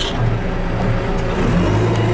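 John Deere 310SE backhoe's diesel engine running steadily as the machine drives along, heard from inside the cab. The low drone grows a little stronger near the end.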